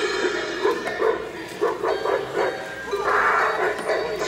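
Spirit Halloween's Monty cymbal-playing monkey animatronic starting its routine through its speaker: sudden animal-like monkey calls over music, with a noisy crash-like burst near the end.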